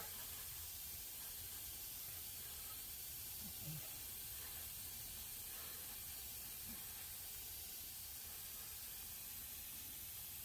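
Airbrush spraying Testors enamel paint onto a model car body: a steady, even hiss of air and paint mist.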